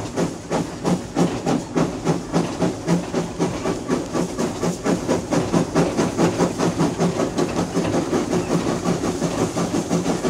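Blues harmonica imitating a steam train: breathy, rhythmic chugging that speeds up to about four chugs a second.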